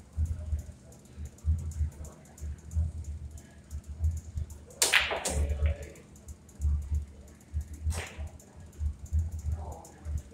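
Pool balls clicking during a shot: a sharp click about five seconds in, when the cue strikes the cue ball, then a ball-on-ball knock right after, and another sharp ball click about three seconds later. Low, irregular thumping runs underneath.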